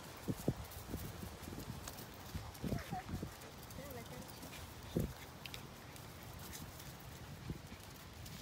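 Two puppies play-wrestling on grass, making scattered short animal noises. A few brief pitched sounds come near the middle, and the loudest comes about five seconds in.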